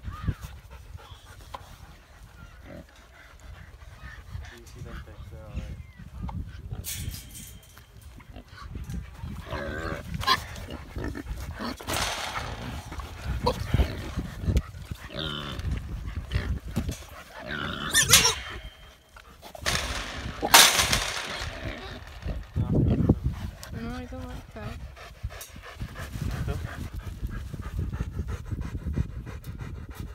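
Alaskan malamute panting and pigs grunting through a pen fence, with a few short, loud rushes of noise in the middle.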